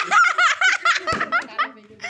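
A person laughing hard in a quick run of high-pitched laughs, about seven a second, dying away near the end. A short knock about a second in.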